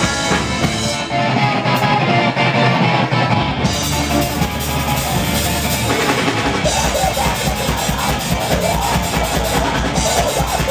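Live ska band playing loud and steady: drum kit, bass drum and electric guitar.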